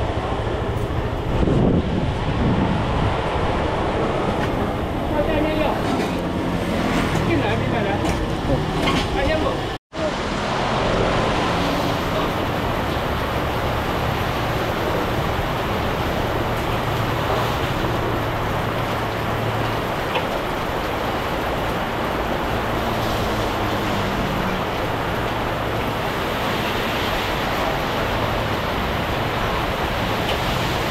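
Steady roadside traffic noise with indistinct voices in the background. The sound drops out for a moment about ten seconds in.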